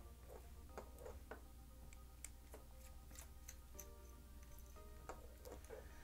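Faint small ticks and clicks of a precision T2 Torx screwdriver turning tiny screws out of a smartwatch's housing, over quiet background music.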